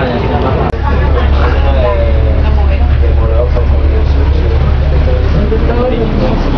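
City bus running, a steady low engine and road rumble heard from inside the cabin under people's voices; the sound drops out briefly about a second in at an edit.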